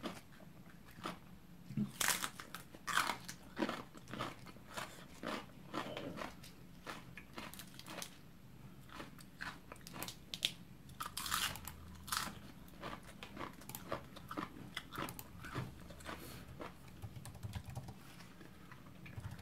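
A person chewing close to the microphone, with irregular crisp crunches of raw napa cabbage and other leafy vegetables eaten with fermented fish.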